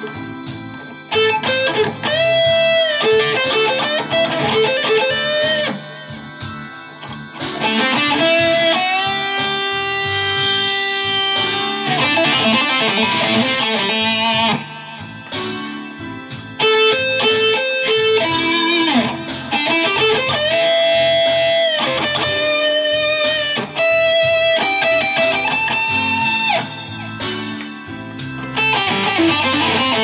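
Electric guitar, a Stratocaster-style solid body, playing a blues lead solo. The phrases are single notes, many held and bent up in pitch, with short softer gaps between them.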